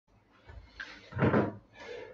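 Handling knocks and bumps, the loudest a dull thump a little over a second in, as an object is set down. After it comes movement across a room floor.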